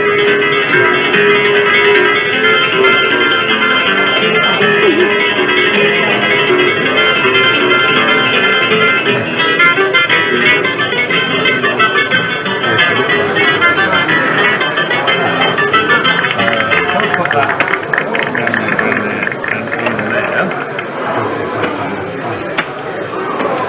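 Spanish guitar music playing over the chatter of voices in an exhibition hall, starting suddenly and thinning out in the last few seconds as the voices take over.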